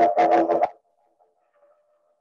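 Didgeridoo played in a rhythmic pattern: a low drone broken into quick pulses, which stops about three-quarters of a second in and leaves near quiet.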